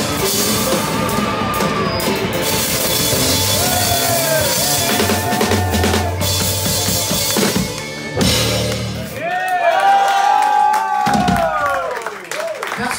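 Live band jam led by a drum kit played hard, with busy snare, bass drum and cymbal strokes under a bass line. About nine seconds in the bass drops out and wavering high calls rise over the drums.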